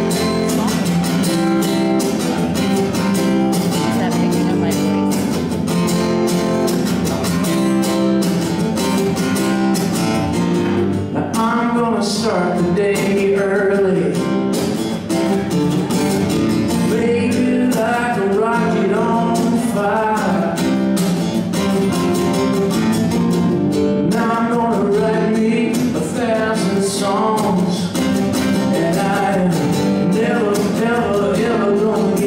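A man singing live over a steadily strummed acoustic guitar.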